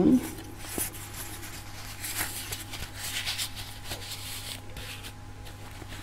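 Soft, scattered rustling and scratching as a crocheted cotton cover on an egg is turned and handled in the fingers, busiest in the middle, over a steady low hum.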